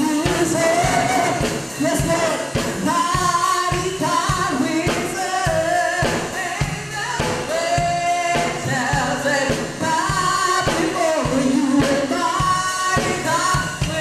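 A woman singing a gospel praise-and-worship song into a microphone, with instrumental accompaniment and a steady drum beat underneath.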